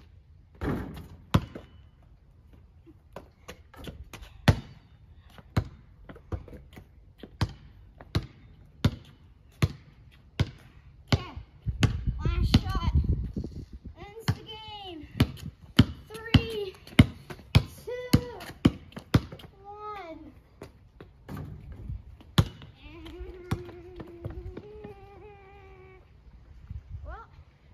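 Basketball bouncing on a paved driveway, dribbled in a steady rhythm of about one bounce every two-thirds of a second. A wordless voice rises and falls through the middle, with a held hum near the end.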